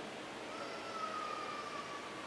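A single high tone comes in about half a second in and slowly falls in pitch, over low room hiss.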